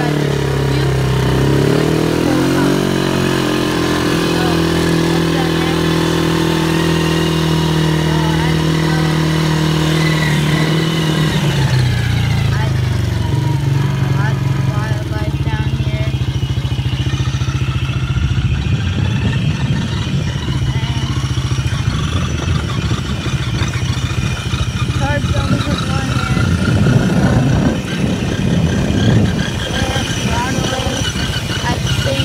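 A 110cc quad's engine running: a steady note for the first ten seconds or so, then from about twelve seconds in it drops in pitch and turns rougher and noisier as the quad moves over grass.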